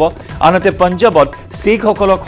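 A man's voice reading the news in Assamese, over background music.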